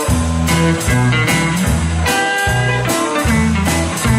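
Live blues-rock band playing an instrumental passage: two electric guitars over bass and a drum kit keeping a steady beat.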